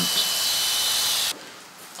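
Sure-Clip electric horse clippers running, a steady high whine over a hiss, cutting off abruptly about a second and a half in.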